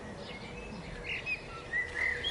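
A few faint, short bird chirps in the background, scattered through a two-second pause, over a low steady hum.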